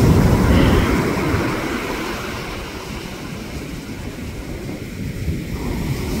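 Surf washing in on a beach, with wind buffeting the microphone. It is loudest at first, eases off in the middle and swells again near the end as a wave runs up the sand.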